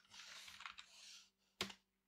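Computer keyboard typing: a few soft keystrokes, then one sharp key press about a second and a half in.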